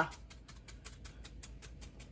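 Kitchen knife rapidly slicing through a hand-held bunch of water-green stalks, cutting against the thumb: a faint run of quick, even cuts, about eight a second.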